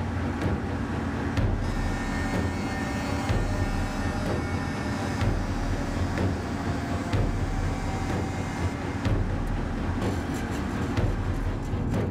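Steady rumble of a moving car, engine and road noise, with faint sustained tones above it.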